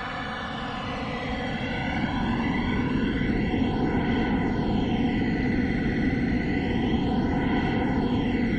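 Droning, dense soundtrack of an art video, with tones sweeping up and down, played over the room's loudspeakers. It grows louder about two seconds in.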